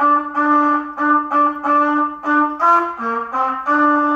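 Trumpet playing a run of separately tongued notes, about three a second, mostly repeating one pitch. Near the end it rises to one higher note, drops to two lower ones, then goes back to the main pitch.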